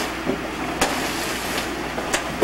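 Wrapping paper rustling and tearing as a gift box is unwrapped, with one sharp snap a little under a second in, over a steady low hum.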